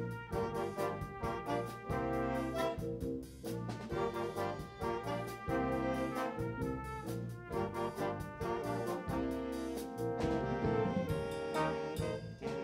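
A high school jazz ensemble playing live, its brass section of trumpets and trombones holding chords over the drums.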